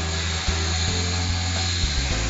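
Background music with a held bass line, over the steady noise of a CNC machining center's insert cutter high-speed milling a steel forge die.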